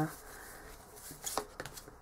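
Tarot cards being handled in a pause: a few light, short clicks of card against card, one about halfway through and a couple more shortly after.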